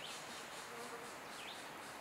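A steady high-pitched pulsing buzz, about four to five pulses a second, with a short chirp about once every second and a bit.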